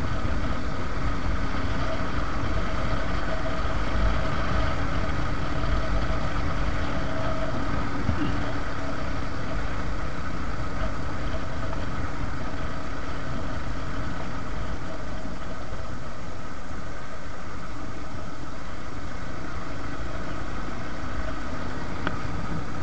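Suzuki Gixxer single-cylinder motorcycle engine running steadily while cruising at a constant throttle, over a low rumble of wind on the microphone.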